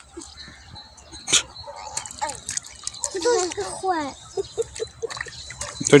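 A small, sharp splash in shallow water about a second in, among quiet water sounds at the pond's edge, with a voice speaking briefly a few seconds in.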